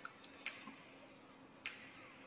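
Spoon clicking against the side of an aluminium cooking pot while a thick chicken and potato curry is stirred: three faint, short clicks, one at the start, one about half a second in and one near the end.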